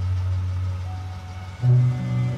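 Steady car engine and road noise as heard inside the cabin, coming in suddenly over a low hum. About one and a half seconds in, a loud low tone cuts in.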